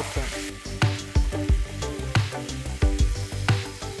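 Raw ground beef sizzling in olive oil in a hot frying pan, with a spatula knocking and scraping against the pan several times as the meat is stirred and broken up.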